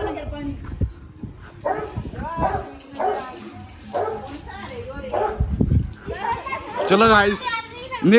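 Several people talking and calling out in non-English speech, with a louder, drawn-out voice near the end.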